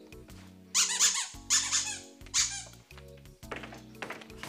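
Background music with low held notes, over which come three short high-pitched squeaks, the first about a second in and the last about two and a half seconds in.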